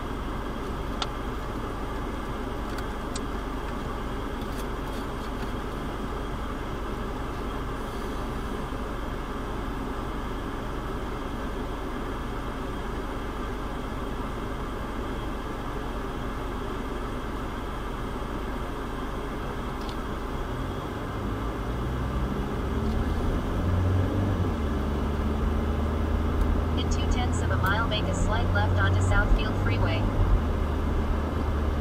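Car cabin hum while stopped, then about two-thirds of the way through the car pulls away: engine note rising and road noise growing louder as it accelerates.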